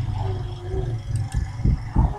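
Steady low hum of the recording's background noise, with a couple of faint clicks a little over a second in, fitting computer mouse clicks as the File menu is opened.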